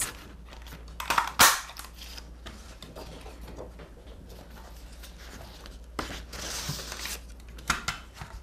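Extra-giant sakura flower craft punch pressed down through cardstock: one sharp snap about a second and a half in. Later, lighter paper rustling and a couple of small clicks as the cut sheet is handled.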